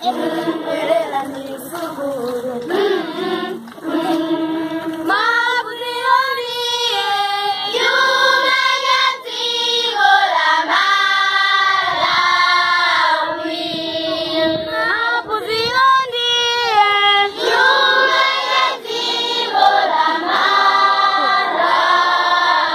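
A large choir of primary-school children singing together without instruments, in phrases of held notes.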